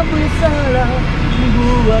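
Steady low rumble of a fire engine on the move, heard from inside its crew cab, under a sung melody.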